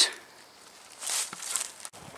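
Footsteps scuffing through dry leaf litter and brambles on a woodland floor: a couple of short, soft rustles about a second in.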